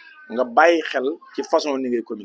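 A man's voice speaking in two short phrases with strongly sliding pitch, starting about half a second in.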